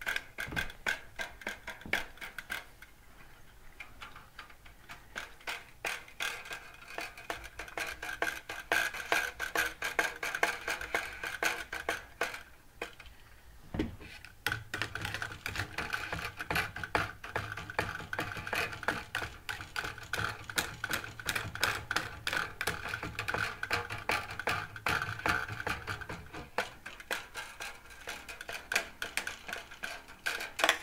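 Homemade one-string instrument with a metal vacuum-cleaner tube as its resonator, its string struck in a fast, uneven run of sharp clicking strokes that ring with a metallic resonance. A low drone joins in around the middle, fading out a few seconds before the end.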